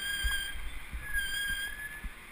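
Bicycle brakes squealing in a steady high pitch, in two stretches: one fading out about half a second in, the other from about a second in to near the end, as the bike slows. Low rumble from wind and road underneath.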